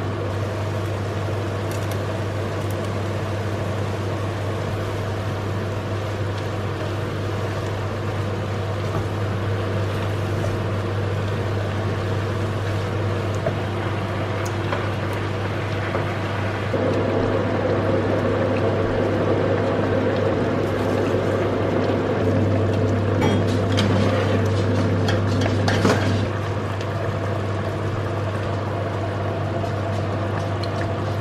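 Mince and chopped vegetables cooking in a cast iron casserole pot and being stirred with a wooden spoon, over a steady low hum. The sound grows louder and fuller for several seconds in the second half.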